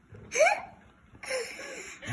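A young boy laughing: a short rising squeal about half a second in, followed by breathy, airy laughter.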